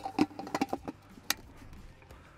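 Clicks and knocks of a Westcott Deep Focus reflector being fitted onto a strobe head on a light stand: a quick run of sharp clicks in the first second, then one more sharp click.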